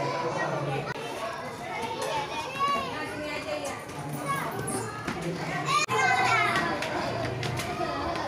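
A crowd of young children's voices chattering and calling out at play, high-pitched and overlapping, growing louder in the second half.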